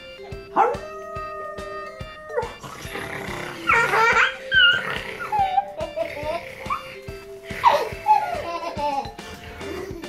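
A man imitating a wolf's noises in short outbursts, about half a second in, around four seconds and near eight seconds, over steady background music.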